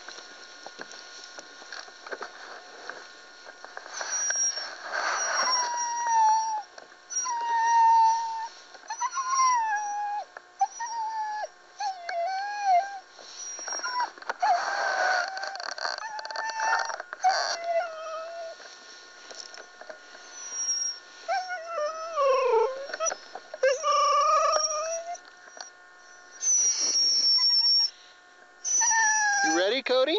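A team of harnessed husky-type sled dogs howling and whining, with several voices in wavering, drawn-out calls starting about four seconds in and overlapping at times, as they wait to be let go.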